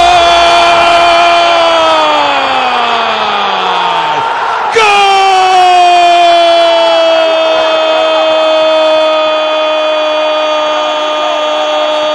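A sports commentator's drawn-out goal cry for a football goal: two long held yells, the first falling away after a few seconds and the second starting about five seconds in and holding almost to the end, over stadium crowd noise.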